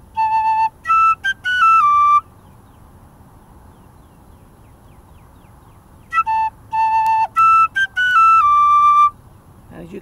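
Metal tin whistle playing the same short strathspey phrase twice, with a pause of about four seconds between. Each time it opens on a held A, then steps downward through clipped short notes leading into longer ones, the Scotch snap of the strathspey.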